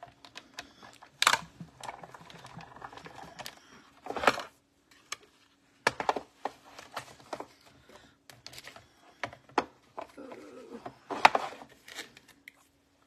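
Manual hand-cranked die-cutting machine feeding a stack of acrylic cutting plates and a metal die through its rollers, with sharp clicks and knocks as the crank turns and the plates are pulled out and lifted apart.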